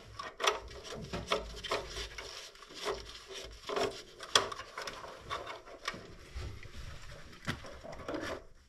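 Irregular sharp clicks and rubbing of plastic parts and wires as gloved hands work the wiring and plug connectors in the open underside of an electric water heater. The sharpest click comes about four and a half seconds in.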